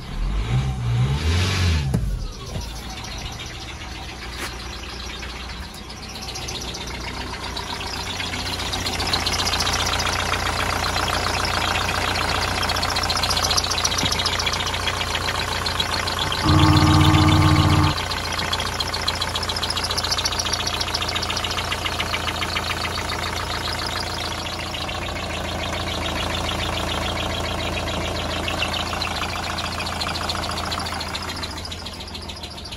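Nissan X-Trail T30 2.2-litre diesel engine starting, loud for the first two seconds, then idling steadily; the idle grows louder about eight seconds in. About two-thirds of the way through, a loud steady buzzing tone lasts about a second and a half.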